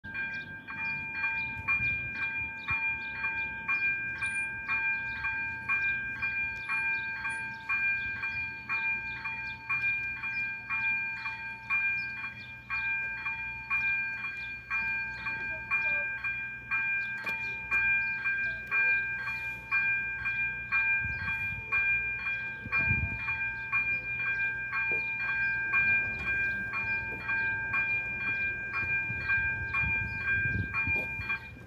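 AŽD-97 level crossing's electronic warning bell ringing in an even rhythm of about two strikes a second, a bright metallic ding repeated steadily: the crossing is closed for an approaching train.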